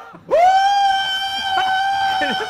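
A man's mock scream: one long, high, loud shriek held at a steady pitch, starting a moment in. It is a comic imitation of someone terrified.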